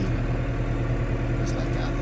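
Tractor engine running at a steady speed, heard from inside the tractor's cab while it drives.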